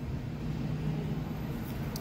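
Steady low hum of a supermarket's background noise, with no distinct events.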